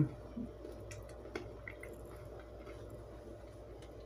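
A person chewing a bite of chocolate-covered pretzel with her mouth closed: a few faint crunches and clicks in the first second and a half, over a steady low hum.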